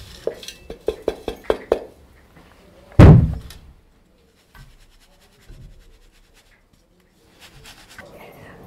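Stainless-steel mixer-grinder jar knocked against a steel sieve and plate to shake out freshly ground masala powder: about seven quick metal taps in the first two seconds, then one loud thunk about three seconds in, followed by faint light clinks.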